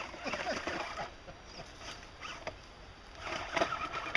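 Footsteps and rustling through ferns, brush and dry leaf litter as people pick their way down a steep wooded slope: irregular crunches and swishes, a little louder near the end.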